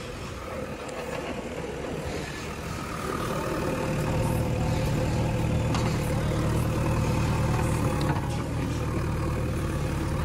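JCB 3DX backhoe loader's diesel engine running, growing louder about three seconds in as it works the backhoe, with a few sharp knocks.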